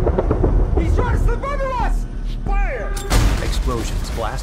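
A sudden loud explosion about three seconds in, over a steady deep rumble of film sound effects and score, with a narrating voice speaking.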